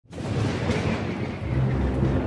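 Thunder rumble with a rain-like hiss, an intro sound effect, joined by a low steady drone from about a second and a half in.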